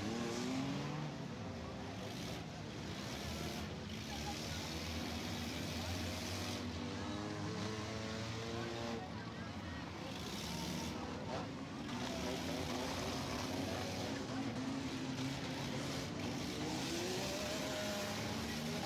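Several car engines running and revving at once in a demolition derby, their pitches rising and falling over one another without a break.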